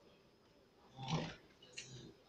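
A person's short low vocal sound about a second in, followed by a brief breathy sound near the end; otherwise the room is quiet.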